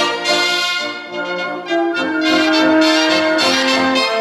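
A cobla, the Catalan wind band of shawms, trumpets, trombone, fiscorns and double bass, playing a sardana. Brass-led chords dip briefly in loudness about a second in, then swell into a loud held chord from the middle on.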